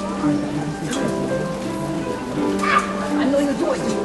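A middle school chorus singing, holding long sustained notes.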